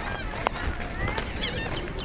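Many high-pitched children's voices shouting and chattering over one another, with a single sharp click about half a second in.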